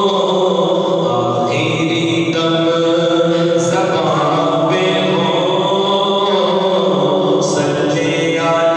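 A man singing an Urdu naat unaccompanied into a microphone, in long held notes that step from pitch to pitch.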